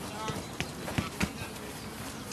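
A football being tapped with the foot close by: a few sharp thuds, the two loudest about a second in, a quarter second apart.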